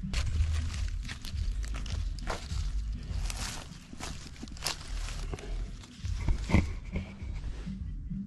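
Crackling and rustling of dry leaf litter and plastic mesh as orange plastic fencing is pulled down to the ground and a wire clip is pushed through it into the soil, a run of short crunches and scrapes.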